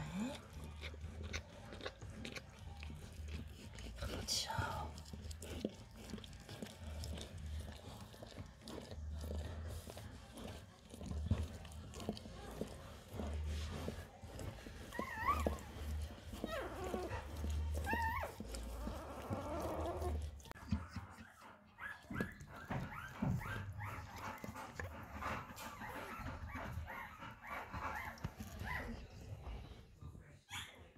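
Newborn puppy giving a few short, high squeaks that rise and fall in pitch about halfway through, as its mother licks it.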